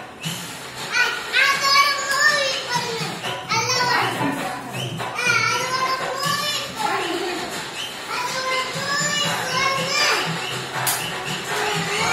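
Children's high voices calling out and chattering while they play, over music with a steady beat.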